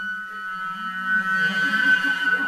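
Flute and clarinet duo playing contemporary chamber music: a high held tone over a low, wavering clarinet note. A breathy air noise swells in the second half.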